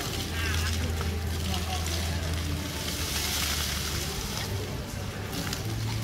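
Ground-level plaza fountain jets spraying and splashing onto paving, a steady watery hiss that swells briefly midway, over a steady low hum, with distant voices of people and children.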